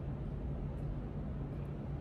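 A steady low hum with a faint even hiss over it and no distinct events: background room tone.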